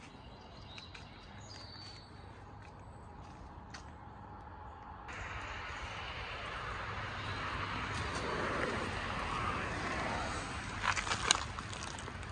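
Outdoor background noise: a rushing hiss that swells from about five seconds in and eases off near the end, with a few sharp knocks shortly before the end.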